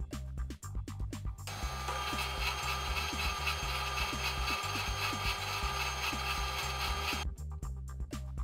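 Background music with a steady electronic beat throughout. From about a second and a half in until about a second before the end, a tensile testing machine adds a steady rasping mechanical noise as it pulls a clamped sample.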